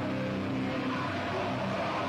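A heavy band playing live: loud, distorted electric guitars holding sustained chords over a dense, unbroken wall of sound.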